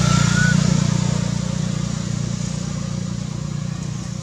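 Steady low drone of a passing motor vehicle's engine, loudest at the start and slowly fading. A thin, high wavering squeal ends about half a second in.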